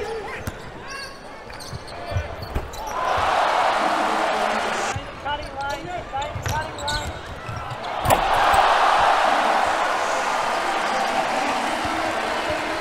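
Basketball game sound in an arena: sneakers squeaking on the hardwood and the ball bouncing, with the crowd cheering twice. First it swells about three seconds in, then it rises louder after a sharp bang near eight seconds, a two-handed slam dunk.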